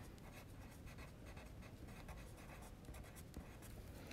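A Caran d'Ache Luminance colored pencil scratching faintly on sketchbook paper as a word is handwritten.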